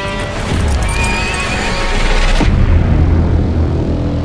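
A horse whinnies once, about a second in, over dramatic background music. About halfway through, the music suddenly turns into a low, dark drone.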